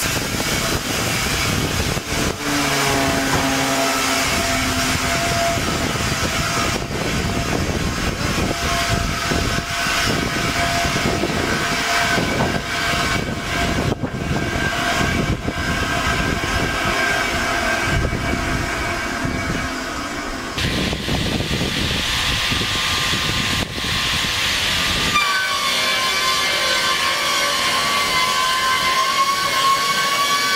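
SKR-2 twin-blade edge trimming saw, its two 450 mm circular blades driven by electric motors, running and cutting the edges off boards fed through it: a steady motor whine over a continuous rumbling sawing noise. The sound shifts abruptly twice in the second half.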